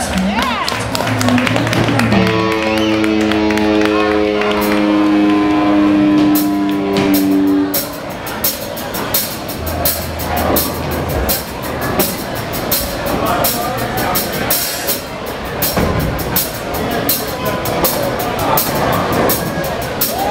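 Live rock band on amplified electric guitars: a held chord rings out for about the first eight seconds, then scattered clapping and crowd chatter with a few stray instrument notes.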